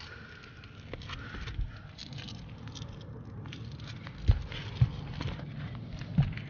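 Shoes scuffing and stepping on asphalt roof shingles in an irregular run, with two sharper knocks about four and a half seconds in.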